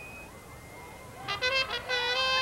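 Marching band winds play a quick run of about five short, detached notes starting about a second in, after a lull filled with faint crowd murmur.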